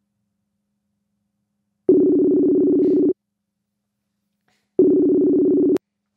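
Electronic call ringing tone from video-call software: two bursts of a steady two-note tone, each about a second long and a couple of seconds apart, the second cut short by a click. It marks a dropped call being redialled to reconnect.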